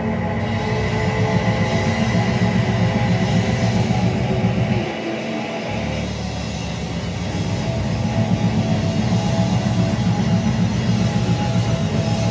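Live rock band playing: electric guitar and drum kit, loud and driving, with the low end dropping out for a moment about five seconds in.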